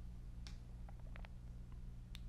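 Quiet room tone: a low steady hum with a few faint clicks about half a second and a second in.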